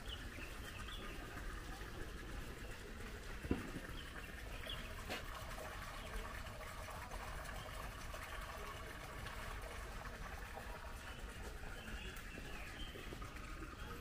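Birds chirping now and then over steady outdoor background noise, with one sharp knock about three and a half seconds in.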